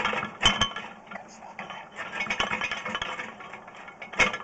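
Sewer inspection camera's push cable being shaken and worked in a cast iron drain pipe: irregular clinks, knocks and rattles, the sharpest about half a second in, over a steady low hum.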